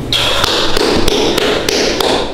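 A few people clapping their hands, with one set of claps landing in an even beat of about three a second.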